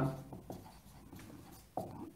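A marker writing on a whiteboard, heard faintly as a few short scratchy strokes.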